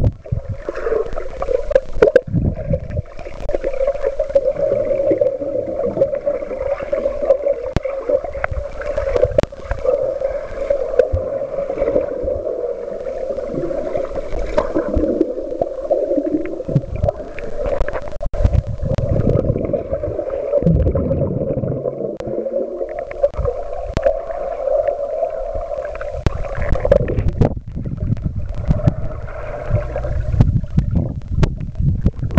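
Underwater pool sound picked up by a submerged camera: muffled swirling and bubbling of water stirred by swimmers, with scattered knocks and a steady hum under it.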